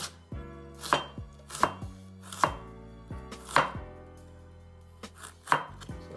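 A chef's knife slicing cabbage thinly on a wooden cutting board, knocking the board with each stroke. There are about six strokes, unevenly spaced roughly a second apart, with a longer pause of over a second in the middle.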